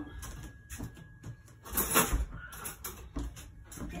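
Kitchen handling noises: a few light knocks and a louder rattling clatter about two seconds in.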